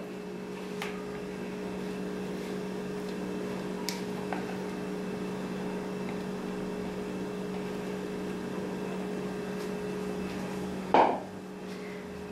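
A steady low hum, with a few faint clicks of batter and utensils against a nonstick frying pan and a brief louder sound near the end.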